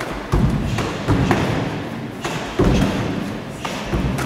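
Martial-arts kicks and punches landing on padded gloves: a series of dull thuds, about one a second, with lighter hits in between.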